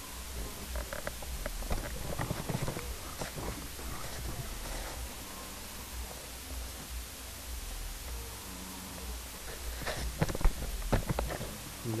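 Steady low hum with scattered rustling and clicks as a handheld camera is moved around, in a cluster about two seconds in and a louder one near the end.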